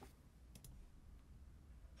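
Near silence, a faint room hum, with two quick faint mouse clicks about half a second in.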